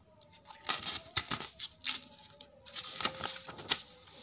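Paper pages of a textbook being flipped through by hand: a quick run of rustles and flaps over about three seconds.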